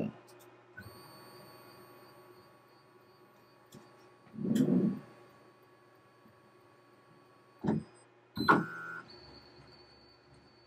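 Onefinity Woodworker CNC's stepper motors homing the X, Y and Z axes: a faint high motor whine during the moves, with short louder bursts about four and a half, seven and a half and eight and a half seconds in.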